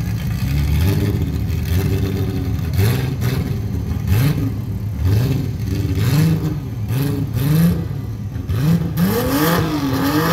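Turbocharged VR6 engine of a MK2 Golf GTI revved over and over at the drag-strip starting line before launch, its pitch climbing and falling about once a second.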